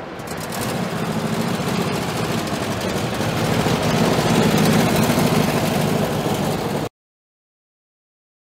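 Classic car engines running as vintage cars set off, growing louder over several seconds as one passes close, then cut off abruptly near the end.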